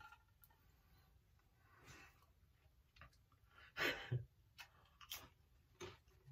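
Faint mouth sounds of a man biting into and chewing a cracker, with a few soft clicks and one louder bite or breath about four seconds in.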